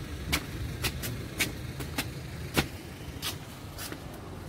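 Footsteps going down stone stairs: a sharp step about twice a second, over a low steady rumble.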